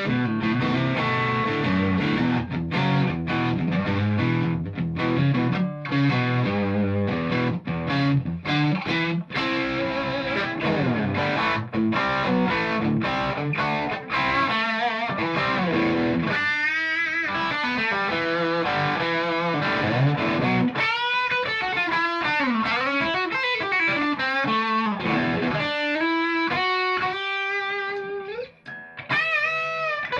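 Stratocaster-style electric guitar played through a Fender tube combo amp, overdriven by an Ibanez TS808 Tube Screamer (Keeley mod). Chords first, then single-note lead lines with string bends from about halfway, with a brief break just before the end.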